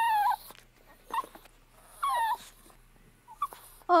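A dog whimpering: several short, high whines that fall in pitch, spaced about a second apart.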